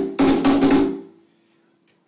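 A fast run of hand strikes on a BoxKit cajón's maple tapa with its adjustable snare turned up, the snare wires buzzing against the front. The playing stops about a second in and the box's low ring fades out.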